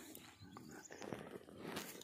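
Faint rustling and handling noise as a thin steel wire is picked up and folded in half, with a light click a little before the end.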